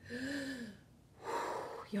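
A woman's drawn-out, weary voiced sigh that rises and falls in pitch, followed by a long breathy exhale, a sign of tiredness.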